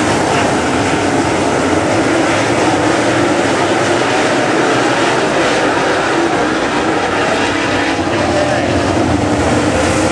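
A pack of dirt super late model race cars racing at speed, their V8 engines making a loud, steady, blended drone with no let-up.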